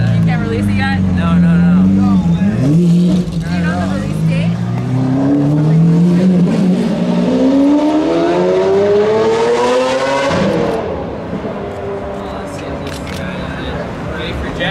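A car engine accelerating on the street, its pitch climbing steadily for about five seconds before dropping away abruptly about ten seconds in. Low engine running and scattered voices are heard before it.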